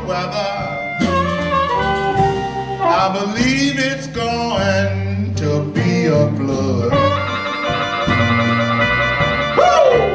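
Live electric blues band playing: electric guitars, upright bass and drums, with an amplified harmonica playing bending, sliding notes and a long held chord about seven seconds in.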